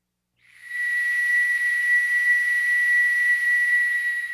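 A single high, breathy whistle note, starting about half a second in and held steady, with a lot of airy breath noise around it.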